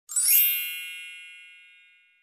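A bright, shimmering metallic chime that sweeps quickly up in pitch as it strikes, then rings on and fades away over about two seconds.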